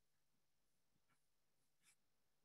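Near silence: faint room tone with two weak, short ticks, one about a second in and a slightly louder one near the end.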